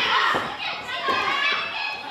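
High-pitched women's voices shouting and crying out, with a short thud at the start and another just after.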